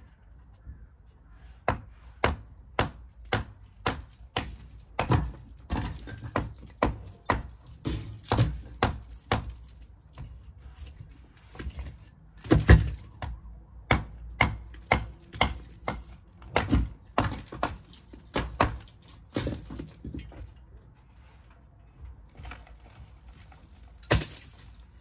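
Hammer blows on the top course of an old brick wall, knocking bricks and mortar loose: a long run of sharp strikes about two a second, the loudest near the middle. Near the end the blows stop and a rush of crumbling brick and mortar dust falls.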